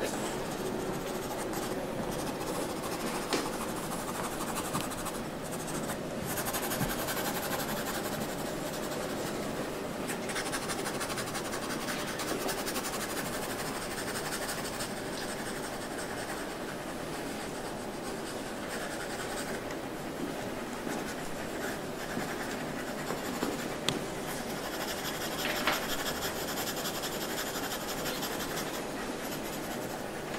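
Pencil scratching on drawing paper in continuous drawing and shading strokes.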